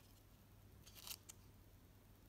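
Near silence with faint room hum, broken about a second in by a few faint, brief clicks and rustles as fingers handle foamiran flowers on metal snap hair clips.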